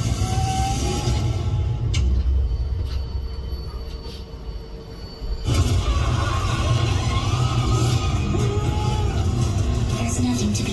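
Horror-film montage soundtrack, eerie music with a heavy low rumble, playing over a tram car's speakers. It dies down in the middle and cuts back in suddenly about five and a half seconds in.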